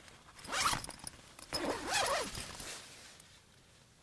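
Tent door zipper pulled open in two strokes: a short one about half a second in, then a longer one about a second later.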